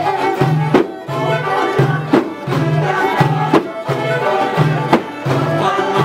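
Uyghur folk dance music: melody instruments over a steady, repeating low drum beat.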